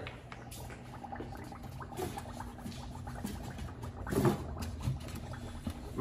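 Faint sloshing and small splashes of water in a plastic tub as a landing net is worked around a fish in it, over a low steady hum.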